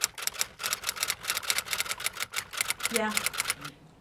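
A rapid, fairly even run of sharp clicks, about eight a second, that stops shortly before the end.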